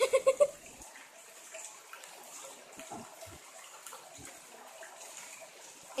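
A short burst of a voice right at the start, then faint steady background hiss with a few soft clicks.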